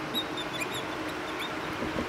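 Dry-erase marker squeaking on a whiteboard while a word is written: a scatter of short, faint, high squeaks over a steady room hum.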